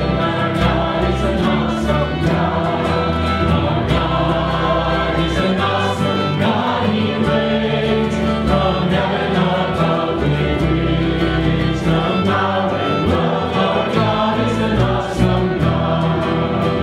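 A live Christian worship song: a man singing lead into a microphone over violin and guitar, the music steady and continuous.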